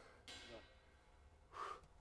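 Near silence, with a quiet spoken "da" early on and a short breath out about a second and a half in from a drummer winded by hard playing.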